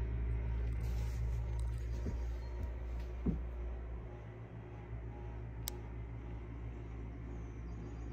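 A steady low hum of room background noise, easing slightly midway, with a faint tick and one sharp click a little over halfway through.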